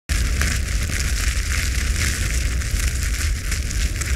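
Fire crackling and hissing over a deep, steady rumble, starting abruptly.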